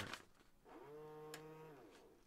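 A man's quiet, drawn-out hum, one steady note held for about a second, with a light click in the middle of it.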